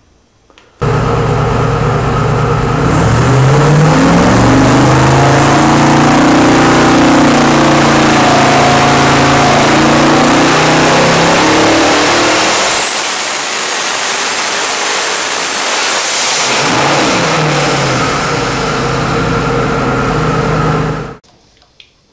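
Twin-turbo 454 cubic inch LS V8 running: it idles, is revved up and held high for several seconds, then drops back. A high whistle sounds for a few seconds midway, and the engine revs again before settling to a steady idle that cuts off suddenly.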